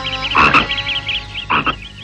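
Frogs croaking in a fast chattering train of short calls, a cartoon sound effect for a flooded rice paddy, broken by two louder short bursts about half a second and a second and a half in.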